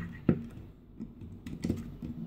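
Plastic parts of a knock-off G1 Weirdwolf Transformers figure clicking and knocking as it is handled and set on a wooden table: a handful of short sharp clicks, the loudest about a third of a second in.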